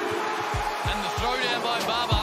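Arena sound of a live professional basketball game: steady crowd noise with several low thuds and short high squeaks, typical of the ball and sneakers on the hardwood court, under background music.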